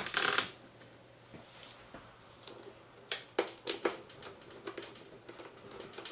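A brief rustle of handling at the start, then a scattered series of light, sharp clicks and taps, about seven over three seconds. These are a small Torx T8 screwdriver being fitted to and turning the screws that hold the iMac's LCD panel in its aluminium frame.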